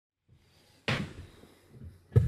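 A single sharp knock about a second in, fading over about half a second, with a softer bump near the end.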